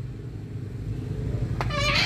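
An engine idling with a steady low hum. Near the end comes a short, high, voice-like call.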